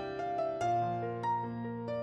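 Slow, gentle background music on a keyboard: single notes struck every half second or so over a held low bass note.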